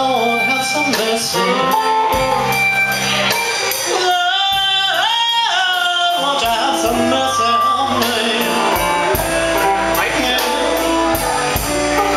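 Live blues-rock band playing loud: electric guitars over a steady beat, with a long, wavering held lead note a few seconds in.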